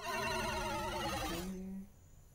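A pitched warbling tone with a fast, even vibrato for about a second and a half, ending in a short steady lower note.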